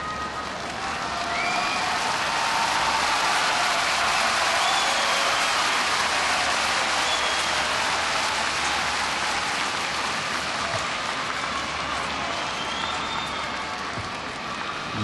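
Sumo arena crowd applauding and cheering: dense, steady clapping that swells over the first couple of seconds, with a few scattered shouts rising above it.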